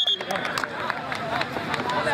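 Several people's voices calling and talking over one another around an outdoor kabaddi ground, with a few sharp clicks among them. There is a brief gap at the very start.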